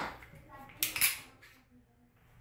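Metal-on-metal clicks and a short scrape as the slide of a SCCY CPX-1 9mm pistol is worked off its frame during disassembly, two quick metallic sounds about a second in.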